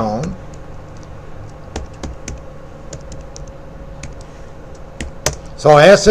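Computer keyboard being typed on: a sparse run of light key clicks as a Linux 'su -' command and a password are entered, with one firmer keystroke about five seconds in.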